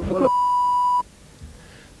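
A single electronic beep: one steady, high, pure tone lasting under a second that cuts off suddenly, then only faint background noise.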